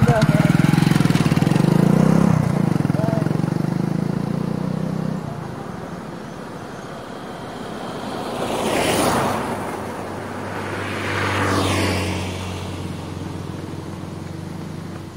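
Motorcycle engine running right beside the microphone, then pulling away and fading about five seconds in. Later come two rising-and-falling whooshes, about nine and twelve seconds in.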